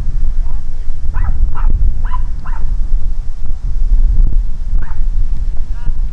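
Wind buffeting the microphone, a loud steady low rumble. Over it come about five short, high calls from a distance, bunched in the second and third seconds with one more near the end.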